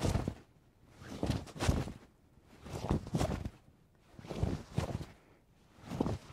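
Cloth swishes of a heavy martial-arts uniform as a karate practitioner throws a high block and then a high punch, five times over. Each repetition makes a pair of quick swishes, about one every second and a half.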